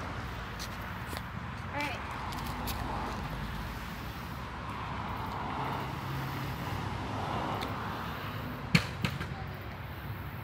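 A longboard set down flat onto a concrete driveway: one sharp clack near the end, then a smaller knock just after it, over steady outdoor background noise.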